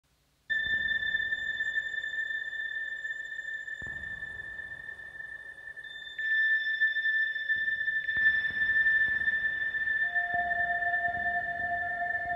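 Moog Subharmonicon synthesizer playing generative ambient music, its notes driven by a Pilea peperomioides plant's biodata read through an Instruo Scion module. A high sustained tone starts about half a second in, a second layer joins around six seconds and the sound grows louder, and a lower held tone enters near ten seconds.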